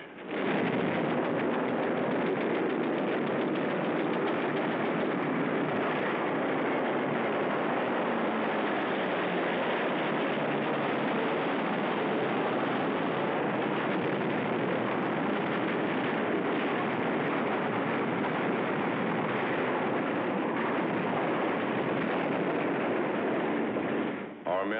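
Sustained, dense battle noise of rapid machine-gun fire, steady in level throughout, on an old sound-film track with no high end.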